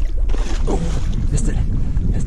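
Wind buffeting the microphone as a steady, uneven low rumble, with a brief muffled voice about half a second in.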